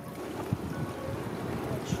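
Steady rushing noise of wind and ocean surf, with a short low thump about half a second in.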